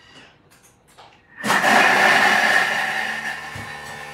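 Thermomix bowl blade chopping halved onion, garlic and red chilli at speed 7, a loud whirring that starts suddenly about a second and a half in and gradually gets quieter as the pieces are cut down.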